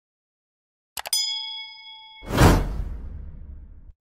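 Subscribe-button sound effects: two quick mouse clicks about a second in, then a bright bell ding that rings for about a second. Just after two seconds a loud whoosh swells up and fades away.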